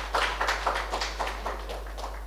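Applause from a small audience: a run of hand claps, several a second, dying away near the end.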